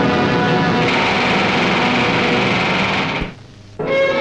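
A battery of pneumatic rock drills pounding and grinding at a rock face in an underground cavern, a dense, fast, steady hammering racket with a reverberant sound. It cuts off suddenly a little past three seconds in.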